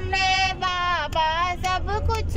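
A woman singing a Hindi devotional bhajan into a handheld microphone, holding long notes with bends in pitch, over the low steady rumble of the moving bus.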